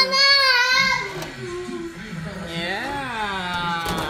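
A young child's high voice in long, drawn-out sounds that rise and fall in pitch, loudest at the start.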